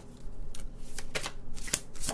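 A deck of oracle cards being shuffled by hand: a quick run of card clicks starting about a quarter second in.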